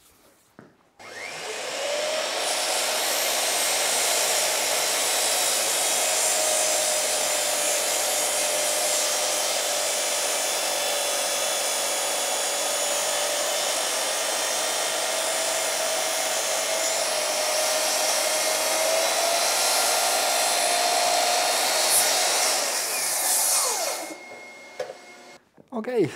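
Bosch GCM 12SDE sliding mitre saw starting up about a second in, its motor whine rising to speed, then running steadily for some twenty seconds while the blade is brought down through a small glued-up hardwood box to cut its lid off. Near the end the motor is switched off and winds down with a falling whine.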